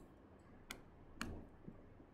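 A few faint, sharp clicks about half a second apart: a stylus tapping on a tablet screen.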